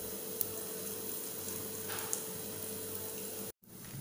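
Steady sizzling hiss of split lentils and cumin seeds roasting in a kadai on a gas stove, with a faint hum underneath. The sound drops out briefly near the end.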